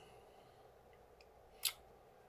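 Faint steady room tone with one short, sharp click-like hiss about one and a half seconds in.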